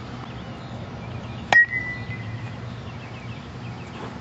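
A single sharp crack of a bat hitting a baseball about a second and a half in, with a brief metallic ring after it, typical of an aluminium bat hitting ground balls in infield practice.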